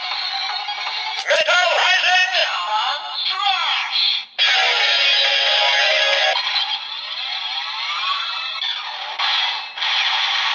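Kamen Rider Zero-One DX Attaché Calibur toy playing its electronic sound effects, synthesised voice calls and music through its built-in speaker, with the Metalcluster Hopper Progrise Key loaded. The sound is thin with no bass. It has warbling, gliding tones, a dense hissy burst about four seconds in, and rising sweeps near the end.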